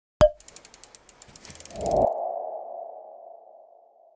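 Logo animation sound effect: a sharp hit, a quick run of ticks, then a swelling tone that rings out and fades away.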